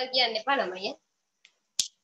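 A woman speaking for about a second, then a single short, sharp click near the end.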